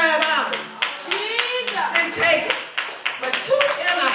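Hand clapping in a quick, steady rhythm, about four claps a second, with a woman's raised voice over it.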